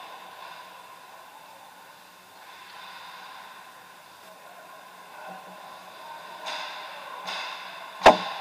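Ice hockey skates on rink ice, with two short hissing scrapes of skate blades near the end, over the steady hum of an indoor ice arena.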